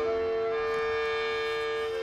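Yamaha Music Siren, a rooftop set of 24 pitched sirens sounded by spinning vanes and opening shutters, playing its time-of-day tune as a long steady held note. Another tone changes about half a second in.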